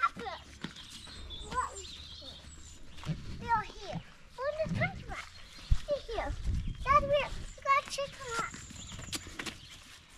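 Young children's voices chattering and calling out in short, high-pitched bursts, over a low wind rumble on the microphone.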